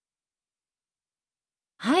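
Dead silence, then a voice begins speaking ("hai") just before the end.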